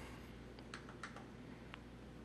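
A few faint, irregular clicks from a computer keyboard and mouse as text is copied and a right-click menu is opened.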